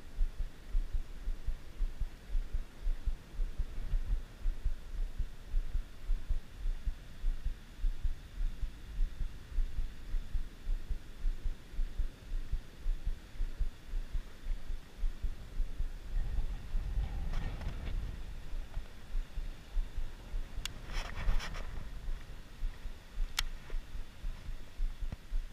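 Low, irregular thumping on the camera microphone, two or three thumps a second, as the angler holds and works a baitcasting reel. A few sharp clicks come near the end.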